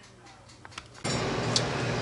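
Faint room tone with a few small clicks, then about a second in a steady background hum and hiss starts suddenly, as the sound changes to outdoor ambience.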